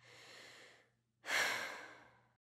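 A person breathing: a soft breath in, then a louder sigh out about a second later that fades away.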